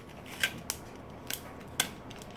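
Glossy catalog paper being folded and creased by hand: four or five short, crisp crackles spread unevenly over two seconds.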